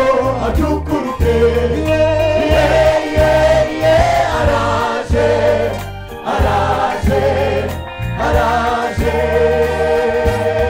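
Gospel choir singing together into microphones over a bass line, many voices with a strong lead line.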